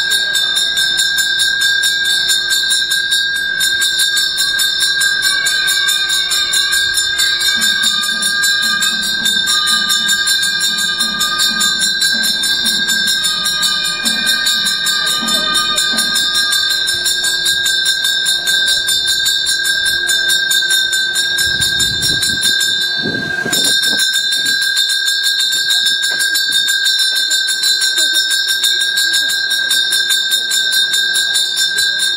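Temple puja bell rung rapidly and without pause, a steady bright ringing that breaks off briefly about two-thirds of the way through. A voice is heard underneath in the middle.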